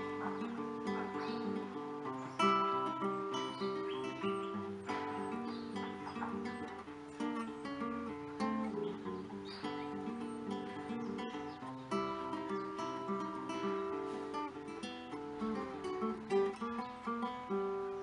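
Solo acoustic guitar playing a ragtime piece: a plucked melody over a moving bass line, note by note.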